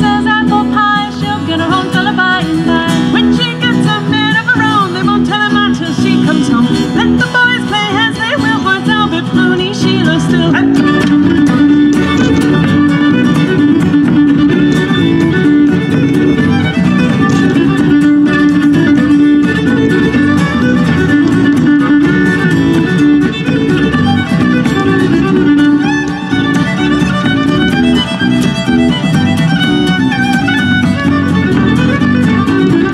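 Irish folk band playing an instrumental break: fiddle carrying the melody over strummed acoustic and electric guitar, with a bodhrán.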